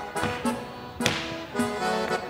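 Chula dancer's leather boots stamping and tapping on the stage floor in quick footwork strikes, the loudest about a second in, over gaúcho accordion music.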